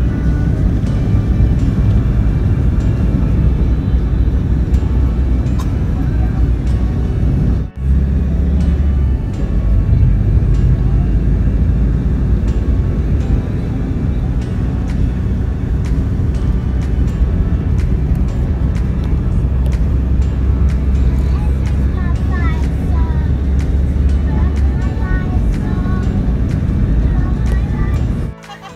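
Loud, steady rumble of a moving vehicle, with wind on the microphone and music playing over it; the sound dips briefly about eight seconds in.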